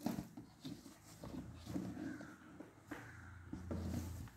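Light handling sounds as plastic dolls are moved about on the floor beside cardboard boxes: scattered soft knocks and rustles, with a low hum growing near the end.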